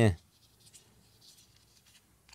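Faint rustling and light ticks of fingers rubbing and gripping a smartphone's protective film sleeve as it is handled.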